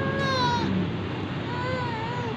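A newborn baby crying during a throat swab: two short wails, the second starting about one and a half seconds in.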